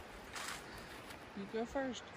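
A brief rustle about half a second in, then a person's short vocal sound near the end, over a steady background hiss.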